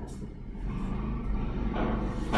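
Low steady rumble, growing a little louder near the end.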